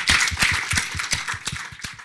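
Audience applauding, many hands clapping together, the applause dying away toward the end.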